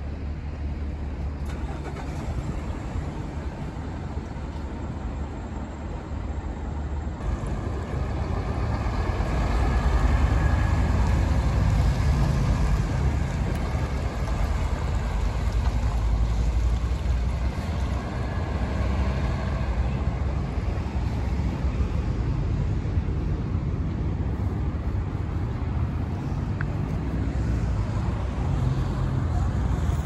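Diesel engine of Nishi Tokyo Bus's trailer bus, a locomotive-styled tractor unit pulling a passenger trailer, running as it moves off and drives past. The engine grows louder about seven seconds in, is loudest through the middle as the bus passes close by, and eases a little as it pulls away.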